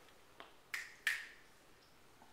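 Two sharp clicks about a third of a second apart, the second one louder, after a fainter click.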